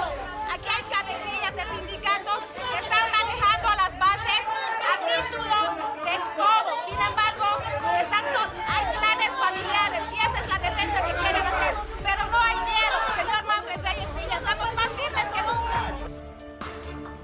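Several voices talking over one another in a heated verbal confrontation in a crowded room, with a woman's raised voice prominent.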